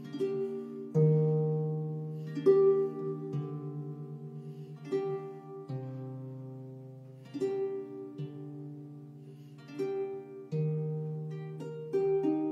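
Lever harp (a Cithara Nova) playing a slow, dignified piece: plucked chords over low bass notes, a new chord every second or two, each left to ring and die away.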